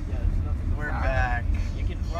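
Steady low rumble of a van's engine and road noise heard from inside the cabin while driving on the highway, with a brief voice about a second in.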